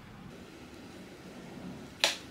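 Faint steady background hiss in a quiet room, with no distinct sound standing out.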